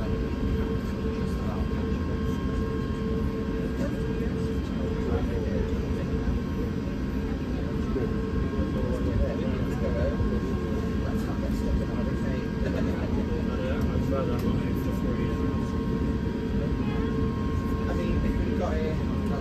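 Steady cabin noise inside a taxiing Airbus A350-1000: a low rumble from the engines at taxi power and the air conditioning, with a few held tones, one of which fades out about halfway through.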